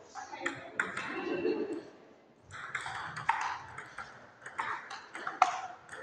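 Table tennis ball struck back and forth in a rally: a string of sharp, hollow clicks as it hits the rackets and bounces on the table.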